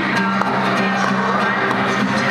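Acoustic guitar strummed live, accompanying a sing-along with voices singing.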